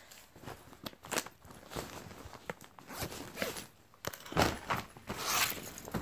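Irregular close rustling, scuffs and clicks of things being handled near the microphone, louder for a stretch about four seconds in.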